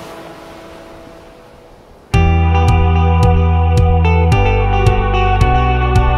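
Background music: a soft piece fades out over the first two seconds, then a louder track with guitar and heavy bass comes in suddenly about two seconds in, with a steady beat of about two clicks a second.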